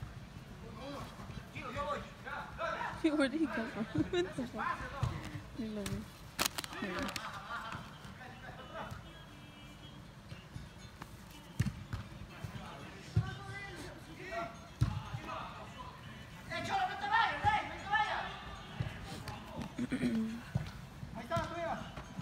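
Soccer ball being kicked during play on indoor artificial turf: a handful of sharp thuds scattered through, the sharpest about six seconds in, among players' shouts and calls.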